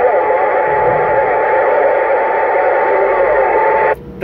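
A Uniden Grant XL CB radio's speaker playing channel 6: loud, steady static with a faint whistle and weak warbling signals buried in it. The static cuts off abruptly near the end as the set is keyed to transmit.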